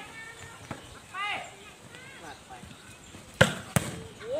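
Two sharp smacks of a volleyball being struck, about a third of a second apart near the end, the first the louder. Before them, players call out to each other.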